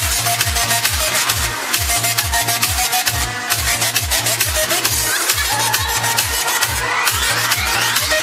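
Electronic dance music played loud, with a steady kick-drum beat of about two strokes a second and a rising sweep building over the last few seconds.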